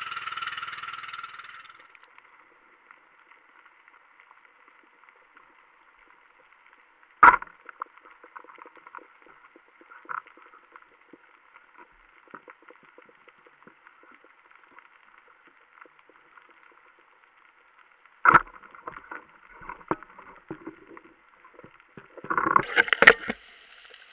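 Muffled underwater sound on a night reef dive: a faint, continuous crackle of tiny clicks, broken by two sharp knocks about 7 and 18 seconds in. Hip-hop music fades out in the first two seconds.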